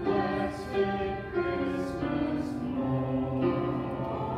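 Congregation singing a hymn together, held notes moving from one pitch to the next.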